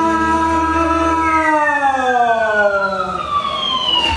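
A singer holds a long note over a low instrumental chord. The chord drops away about a second and a half in, and the voice slides steadily down in pitch until the end.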